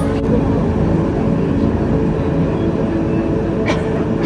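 Penang Hill funicular railway car running at the station: a steady mechanical hum, with one sharp click near the end.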